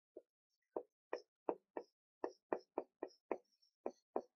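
Felt-tip marker writing on a whiteboard: a run of short, quick strokes, about three a second, as Chinese characters are written.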